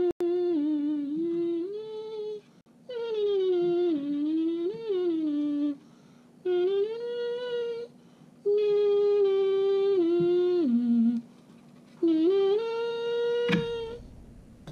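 A man humming a tune in five short phrases with sliding pitch, pausing briefly between them. A sharp click comes near the end.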